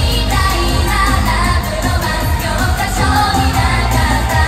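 Japanese idol-pop song performed live through stage speakers: a group of young women singing over loud backing music with heavy bass.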